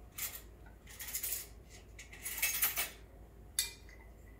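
Kitchenware being handled: several short clinks and rattles of cups, jug or utensils, the longest about halfway through and a sharp one near the end, over a low steady hum.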